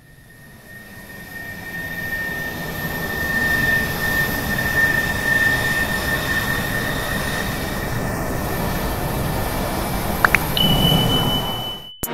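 A steady rushing roar with a high whine, like a jet aircraft engine, fading in over the first few seconds. Near the end come two short rising chirps, then a steady high beep, and the sound cuts off suddenly.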